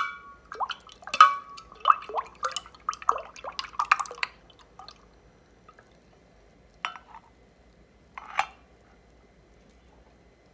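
Metal ladle rattling against the sides of a glass mason jar while stirring thick cream: ringing clinks about twice a second for the first four seconds or so, then two single clinks later on.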